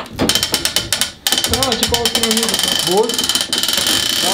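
Hand-cranked winding of an old mechanical tower clock: rapid ratchet-and-pawl clicking from the weight drum as it is turned. There is a short break just after a second in, then the clicking goes on.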